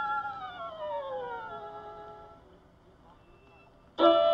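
A single solo violin tone slides slowly down in pitch and fades away, leaving only faint hiss from the old recording. The music comes back in sharply at the very end.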